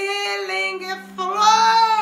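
A woman's voice singing two long, drawn-out notes in ecstatic prayer, the second higher and louder than the first, over a faint steady background tone.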